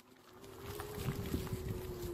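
Wind rumbling on the microphone as the e-bike gets rolling, building from near silence to a steady low rush, with a faint steady hum underneath.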